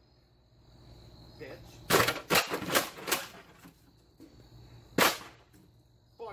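Sharp hits of a hand tool smashing junk furniture: a quick run of about four strikes a couple of seconds in, then one loud strike near the end. Crickets chirp steadily in the background.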